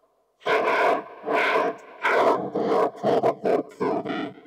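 A voice processed through the Okita, a DIY 10-band analog vocoder: robotic, buzzy speech in word-length bursts, starting about half a second in.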